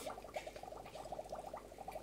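Aquarium water bubbling faintly and steadily, a quick run of small pops.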